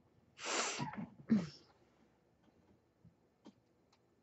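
A woman's sudden breathy outburst: a long rush of breath just under half a second in, then a shorter one with a voiced tail that falls in pitch. A few faint ticks follow.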